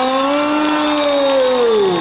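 A man's long, drawn-out exclamation of "oh!", held for about two seconds. It rises slightly in pitch, then slides down and fades near the end, as a reaction to a cricket shot.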